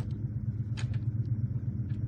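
A steady low hum under a couple of light clicks as small wooden toy train cars are handled and set down on a wooden table.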